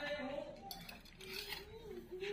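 Cats crunching dry kibble, heard as a few soft clicks, with voices in the background.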